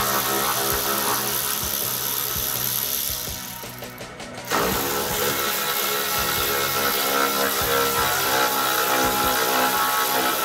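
Ratchet spanner clicking as the bolts holding a car's front wing are undone, under background music. The sound drops away briefly about three seconds in and comes back suddenly about a second and a half later.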